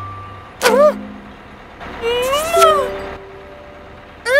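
Cartoon character's wordless vocal sounds: a quick bending sound about half a second in and a longer rising-then-falling one about two seconds in, with a few short held notes between.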